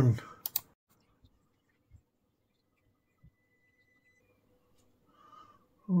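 Two quick computer mouse clicks about half a second in, pressing Run to start an audio analyzer's distortion-versus-power sweep, followed by near silence with a few faint soft knocks.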